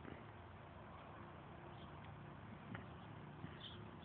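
Near silence: faint outdoor background hiss with a couple of faint ticks; the small DC motor is not running.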